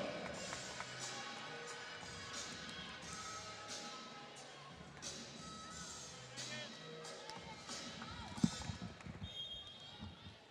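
Arena music playing faintly over the PA in a gym, with a ball bouncing on the court floor; one sharp thud stands out about eight seconds in.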